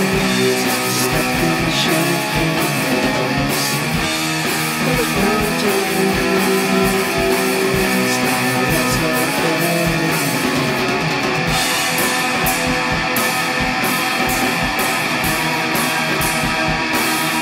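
Shoegaze rock demo: a dense wall of distorted electric guitars over a steady beat, holding an even loud level.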